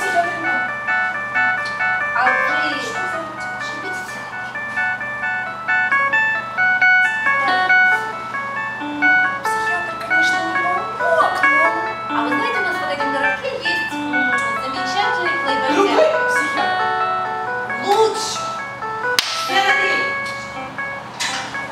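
Yamaha portable keyboard playing a melody of held electronic notes, with people's voices heard in the room.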